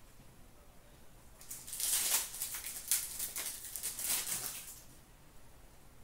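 Hockey trading cards being flicked and shuffled through by hand: a run of quick papery rustles and flicks starting about a second and a half in and lasting about three seconds.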